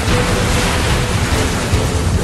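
Steady, loud rushing noise like surging water, a film sound effect of a water spell, with soundtrack music underneath.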